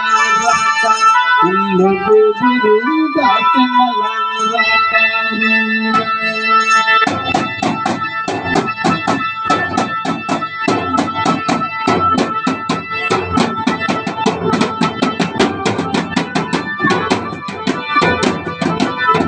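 Dance music: a melody of long held, organ-like notes, joined about seven seconds in by fast, steady beating on large double-headed stick drums, about three to four strokes a second.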